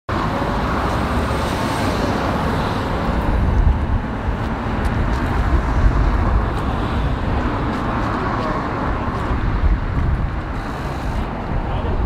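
Road traffic noise: a steady wash of passing cars with a low rumble, and faint, indistinct voices.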